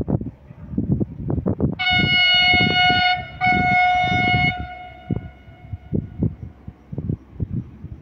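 Electric freight locomotive's horn, a Mercitalia E652, sounding a warning in two blasts of about a second and a half each with a short break between, fading out after the second. Wind buffets the microphone throughout.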